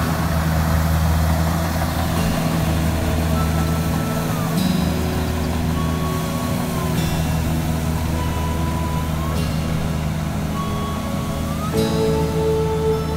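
Kubota combine harvester's diesel engine running steadily under load while harvesting rice, a low drone throughout.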